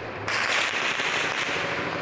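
A dense, continuous crackle of rapid gunfire, the shots blurred together, recorded on a phone during a nighttime shootout. It starts abruptly just after the beginning and fades slowly toward the end.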